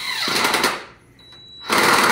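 Cordless impact driver hammering a deck screw into old pallet wood. A short burst comes first, then a pause, then a longer, louder run of rapid impacts begins near the end. The screw is having a tough go in the old wood, a sign that the hole needs pre-drilling.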